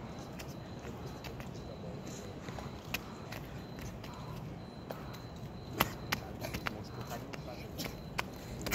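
Rubber flip-flops slapping on paving as a child hops along a hopscotch. A few sharp slaps come close together about six seconds in, over steady low background noise.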